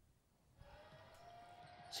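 Near silence, then about half a second in the faint sound of a basketball game in a sports hall comes in, carrying a faint, slowly rising steady tone.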